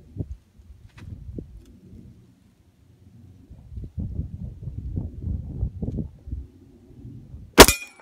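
A single Sig P320 pistol shot near the end, sharp and much the loudest thing, with a brief ring after it. Before the shot there is only low rumbling noise.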